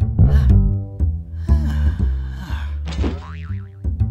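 Cartoon background music with a plucked low bass line stepping from note to note. Sliding, springy cartoon sound effects play over it, with a wobbling, rising one about three seconds in.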